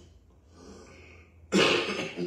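A man coughs to clear his throat into a close-held microphone, sudden and loud, about one and a half seconds in, after a short quiet pause with a faint breath.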